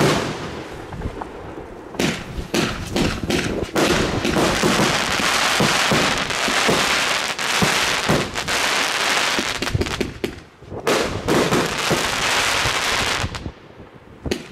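Funke Czesc F3 compound firework cake firing: sharp launch and burst reports, then a dense, rapid crackle from the bursting stars. There is a short lull about ten seconds in, then another volley of crackling that dies down near the end.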